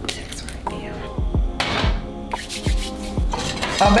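Background music with a steady bass beat, over which pots, pans and utensils clink and clatter a few times as someone cooks in a kitchen.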